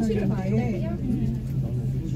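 People talking inside a moving cable car cabin, over a steady low hum.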